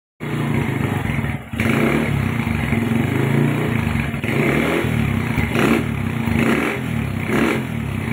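Single-cylinder Honda motorcycle engine running on a standard Honda Megapro carburettor, idling steadily, then given short throttle blips about once a second in the second half.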